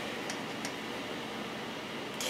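Steady low hiss of room tone, with two faint soft clicks about a third and two thirds of a second in.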